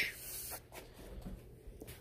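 Faint rubbing and scratching of a hand brushing over corrugated plastic drainage pipe, a little louder in the first half second.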